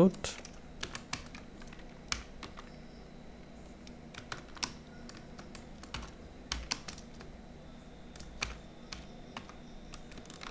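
Typing on a computer keyboard: irregular key clicks with short pauses between them.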